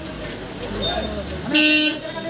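A vehicle horn gives one short, steady honk about one and a half seconds in, over the murmur of crowd voices.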